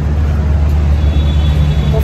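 Steady low rumble of road traffic and running vehicle engines on a city street, with a faint high whine in the second half.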